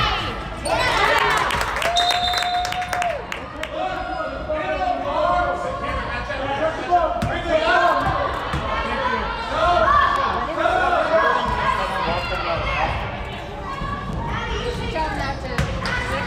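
Indoor youth basketball game: many voices of players and spectators shouting and talking over each other in a reverberant gym, with a basketball bouncing on the hardwood floor. A burst of shouting comes about a second in, and a brief steady tone sounds about two seconds in.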